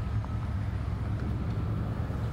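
A 1993 Chevrolet Silverado 1500 pickup's engine idling, a steady low hum.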